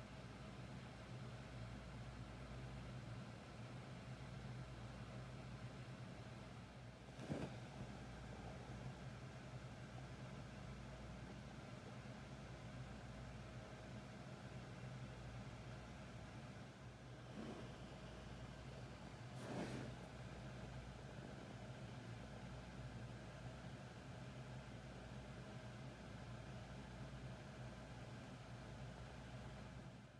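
Faint room tone with a steady low hum and three brief knocks, about 7, 17 and 19 seconds in.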